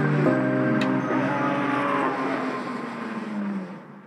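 Trap instrumental beat at its close: held bass and synth notes with a single sharp drum hit about a second in, then a downward pitch slide as the track fades out near the end.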